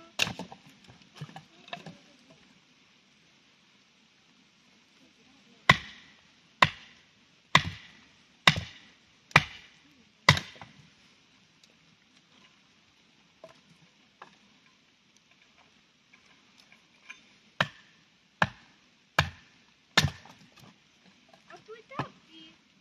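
Batoning wood with a fixed-blade knife: a wooden baton strikes the spine of the knife as it is driven through a short log. There are a few lighter knocks at the start, then six sharp knocks about one a second, and after a pause four more.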